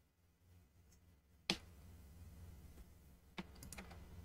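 Clicks at a computer desk: one sharp click about a second and a half in, then a quick run of lighter clicks near the end, over a faint low hum.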